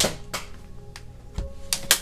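Handling noise on a table: a sharp knock at the start, another click shortly after, a low thump a little past the middle, and two loud clicks near the end as a card deck is set down and things are moved. Soft background music plays steadily underneath.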